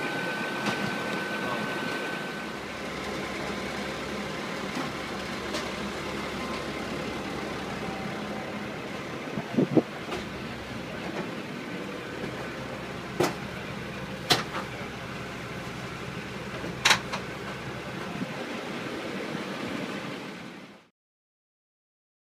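Engine idling steadily, with a few short sharp knocks about ten, thirteen, fourteen and seventeen seconds in; the sound cuts off near the end.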